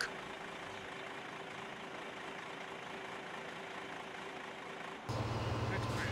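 Faint steady background noise, then about five seconds in a louder, steady low drone of heavy diesel machinery starts and runs on evenly.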